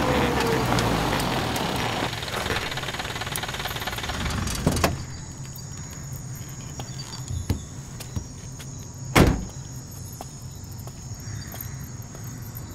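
Jeep engine running as it rolls up and slows, then dying away after about four seconds with a sharp knock. A few light clicks follow, and then a loud car door slam about nine seconds in.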